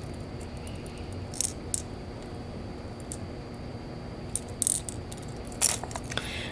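Hard plastic crankbait lures and their treble hooks being handled: a few sparse light clicks and rattles, with a short cluster about two thirds of the way in and another near the end, over a faint steady room hum.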